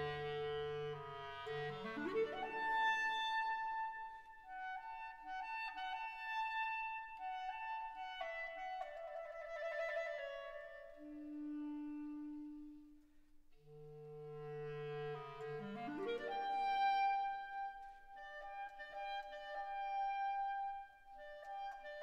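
Soft instrumental background music with a clarinet-like woodwind melody of held notes, including two rising slides, over low sustained tones.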